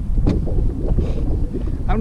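Wind buffeting a camera microphone on an open boat deck, a steady low rumble, with a sharp knock just after the start.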